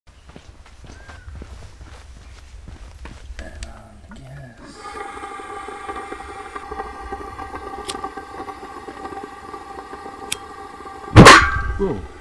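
Gas hissing with a steady whistle from the burner head of a small LPG cylinder, starting about five seconds in, with two sharp clicks. Near the end the gas that has built up ignites all at once with a loud bang that dies away within half a second: the burner was lit the wrong way.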